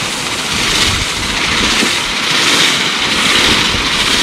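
Traditional Thai woven-bamboo rice-husking mill turned by its long wooden push arm. It makes a continuous grinding rasp as paddy is milled between the upper and lower millstones to strip the husks from the grain.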